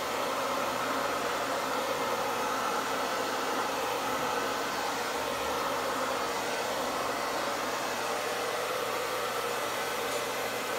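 Handheld hair dryer running steadily, blowing air onto wet acrylic paint to push it across the canvas. A continuous, even whoosh with no change in pitch or level.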